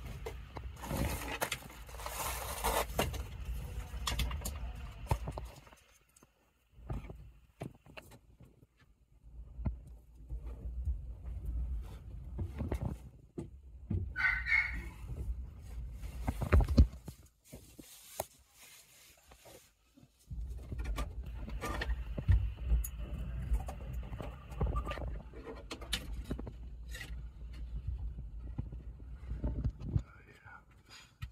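A person crawling over attic joists and insulation while working a catch pole: irregular rustling and scraping with low handling rumble. There are two short lulls, and a sharp knock comes a little past the middle.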